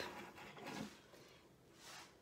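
Near silence: room tone, with only a faint brief sound just under a second in.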